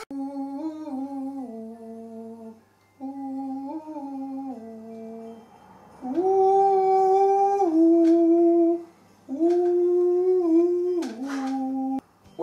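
A voice humming a slow, wordless tune in four phrases, each two to three seconds long with short pauses between, the pitch stepping up and down within each phrase; the last two phrases are louder.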